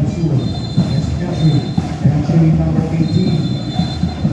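Parade band music playing for the dancing majorettes: held low notes throughout, with high bell-like tones ringing over them about half a second in and again near the end.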